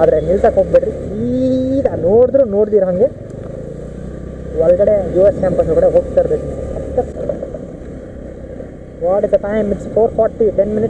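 A scooter's engine running steadily as it is ridden, with wind on the microphone. A person's voice comes over it in bursts: near the start, in the middle, and again near the end.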